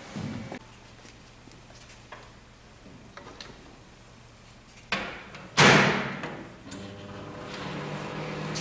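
Microwave oven door being worked: a couple of sharp clicks, then the door shuts with a loud bang a little past halfway. Soon after, the microwave starts running with a steady low hum.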